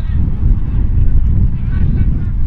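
Wind buffeting the camera microphone: a steady, gusting low rumble, with faint distant calls near the end.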